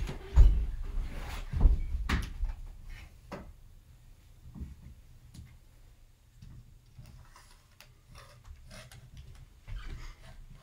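Knocks and rattles of a pop-up green screen and its stand being handled as it is raised, with a few heavy thumps in the first two seconds or so, then fainter clicks and rustles.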